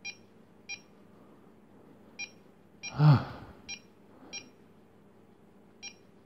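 Small electronic buzzer on a homemade Arduino altimeter giving short high beeps at irregular intervals, seven in all: the battery-indicator warning. A short, louder vocal 'ah' about three seconds in.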